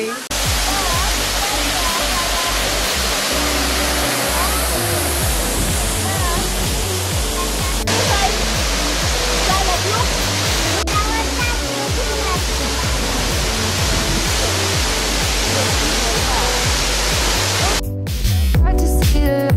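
Steady rushing of a waterfall plunging into a pool, with music and a stepping bass line running underneath.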